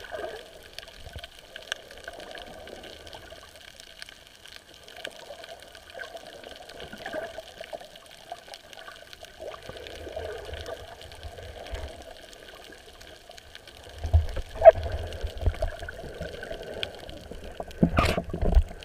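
Water moving around an underwater camera, with many small scattered clicks and crackles. In the last few seconds come heavier low thumps and one sharp louder knock.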